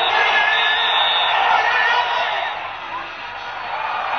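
Stadium crowd noise: many voices cheering and yelling, with a few long whistle-like tones held above it. It eases down after about two and a half seconds.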